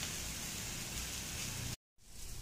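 Plantain slices frying in oil in a nonstick pan, a steady sizzle that cuts off suddenly near the end.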